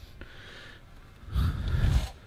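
A person breathing in sharply, close to the microphone, in a pause between sentences, lasting under a second near the end.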